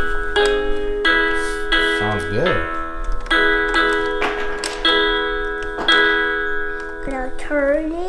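Mattel's Disney Pixar Coco toy guitar playing a melody of electronic guitar notes, one held note after another, roughly one a second, each starting with a small click. A voice comes in near the end.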